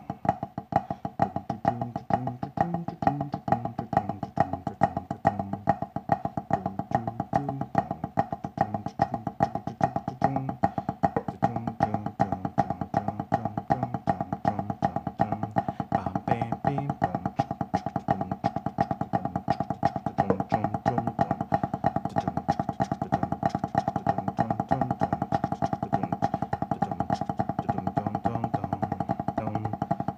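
Wooden drumsticks playing Swiss army triplets on a drum practice pad in a fast, even stream of strokes. Backing music with guitar and a moving bass line plays underneath.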